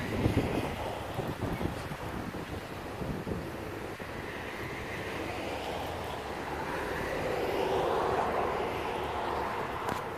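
Outdoor traffic noise with wind buffeting the microphone. A vehicle passes, swelling from about five seconds in, loudest around eight seconds, then fading.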